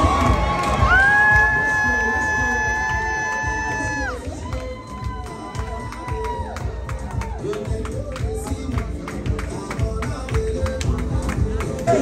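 Loud party music with a crowd cheering and shouting over it. Two long, high, steady notes are held in the first half, one for about three seconds and the next for about two, then a fast run of sharp hits takes over.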